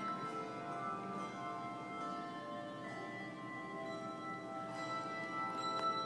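Handbell choir playing a piece of music, with many bell notes struck in turn and left ringing so that they overlap.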